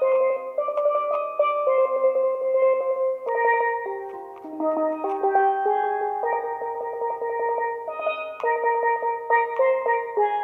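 Solo steelpan playing a melody, the sticks striking rapid rolls to hold the longer notes.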